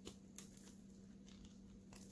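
Faint, scattered soft ticks and crackles of a silicone mold being flexed and peeled off a cured epoxy resin coaster, over a low steady hum.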